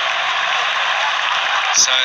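Steady, even background noise from the ground's broadcast microphones, with no distinct events in it.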